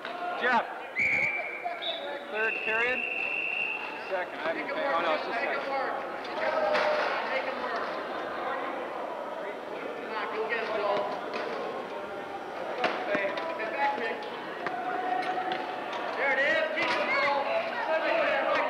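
Wheelchair rugby play on a hardwood gym floor: a ball bouncing, sport wheelchairs knocking and clattering, and indistinct voices echoing in the hall. A high steady tone sounds for about three seconds near the start.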